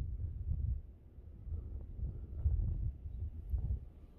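Wind buffeting the microphone: a low rumble that swells and fades in gusts.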